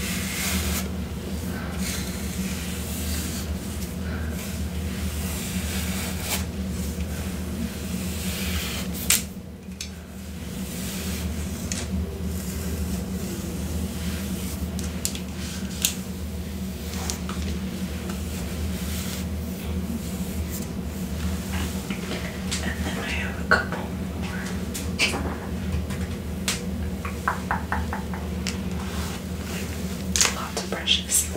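A comb drawn through long hair close to the microphone: repeated scratchy strokes and small clicks, with a quick run of clicks near the end. A low, steady hum sits underneath.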